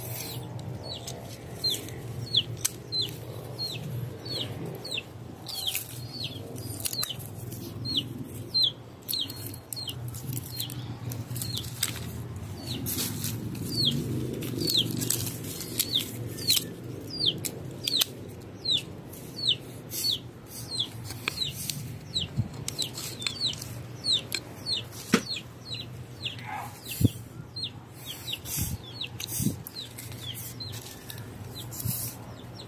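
Hand pruning shears snipping lemon tree twigs: sharp clicks now and then, the loudest a few seconds before the end. Under them runs a steady string of short, high, falling chirps, about one or two a second.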